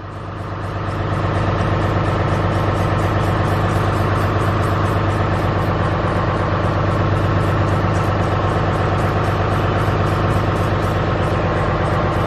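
Truck engine idling steadily, with a fast, even ticking over the hum. It grows louder over the first second or two.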